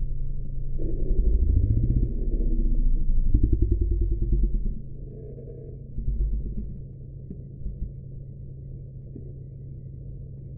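Align DS610 digital R/C servo running its motor and gear train as it swings its horn between positions, over a steady low hum. The motor sound rises and falls through the first five seconds, comes once more about six seconds in, then settles to the hum.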